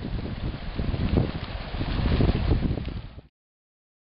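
Fast-flowing river water rushing, with wind buffeting the microphone in uneven low gusts. The sound cuts off abruptly a little over three seconds in.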